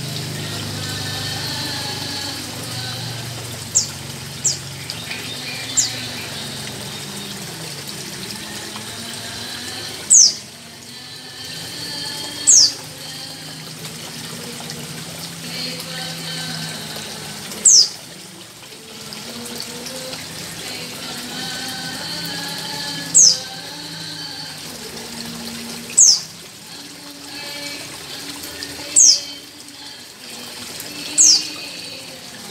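Steady running and trickling water from an aquarium's filter or pump. Short, sharp, high rising chirps cut through it every few seconds, the loudest of them six times in the second half.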